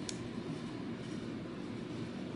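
Steady low background hum of room noise, with one brief light click just after the start as the small plastic model's parts are handled.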